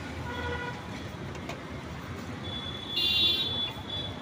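Steady street traffic noise. A short, high-pitched horn toot about three seconds in is the loudest sound, and a fainter tone comes near the start.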